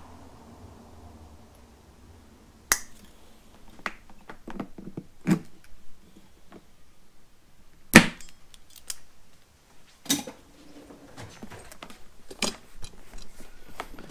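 Pliers and small metal parts clicking and clacking as a bucket seat's trim cable and tension spring are worked loose. The clicks are scattered and irregular, and the sharpest one comes about eight seconds in.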